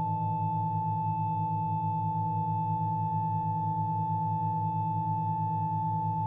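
Organ holding one sustained, unchanging chord, a bright high note over quieter inner notes, with its low notes pulsing evenly about five times a second.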